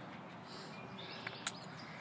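Low outdoor background with faint bird chirps, and two small metallic clicks about one and a half seconds in, the second one sharp, as two metal strap rings knock together while webbing is threaded through them.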